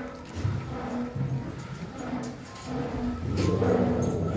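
Goats bleating: a string of short calls one after another.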